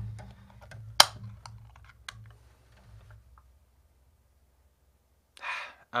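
Sharp clicks and light knocks of objects being handled, the loudest about a second in, dying away after about three seconds. A short hiss comes just before speech resumes near the end.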